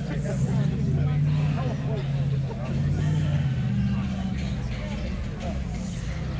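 People talking in the background over a steady low hum of an idling vehicle engine.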